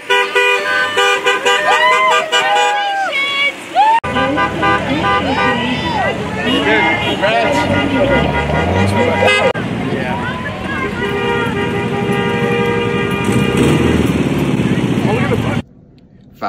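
Many car horns honking in overlapping blasts, mixed with people cheering and shouting. It cuts off suddenly near the end.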